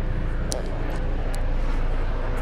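Helicopter flying overhead: a steady low rumble.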